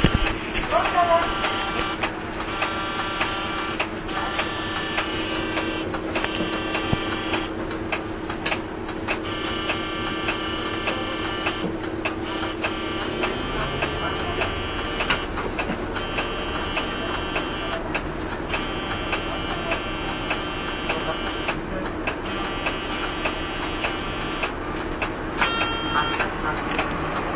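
City bus cabin sound: the diesel engine hums steadily, then its note shifts about halfway through as the bus pulls away. Over it an electronic buzzer tone sounds in repeated bursts of about a second each.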